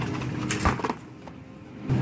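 A few short knocks as a boxed frozen item is dropped into a wire shopping cart, over a steady low hum, with a single thump near the end.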